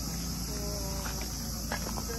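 Steady high-pitched chorus of insects, with a few faint clicks in the second second.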